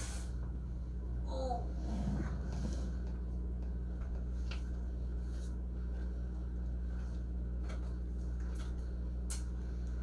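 A steady low electrical hum, with a few faint scattered clicks and rustles as spilled tarot cards are gathered up, and a brief faint murmur of a voice about a second and a half in.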